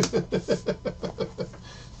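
A man laughing: a run of short "ha" pulses, about six a second, trailing off about a second and a half in.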